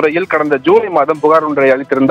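Continuous Tamil news speech, with background music underneath.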